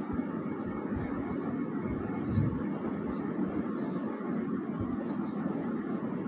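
Steady background hum and hiss with a few soft low thumps, and no speech.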